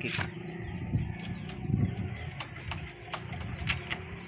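Kick-start lever of a Rusi 150cc motorcycle being pushed against a stiff, jammed kick: a few dull thuds and sharp mechanical clicks, and the engine does not turn over or start. The mechanic traces the stiffness to a loose screw on the magneto side.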